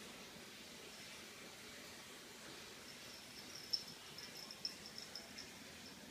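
A high, thin chirping at one steady pitch in quick, uneven pulses, starting about halfway through, over quiet room tone.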